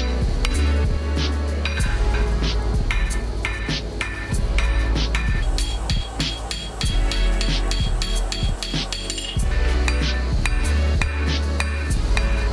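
A rounding hammer striking a red-hot san mai steel billet on an anvil in a steady run of blows, each with a short metallic ring, to draw the billet down in thickness. Background music with a heavy bass plays underneath.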